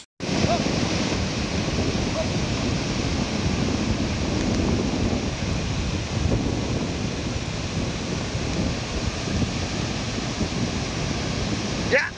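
Ocean surf washing in steadily, with wind buffeting the microphone in a loud low rumble.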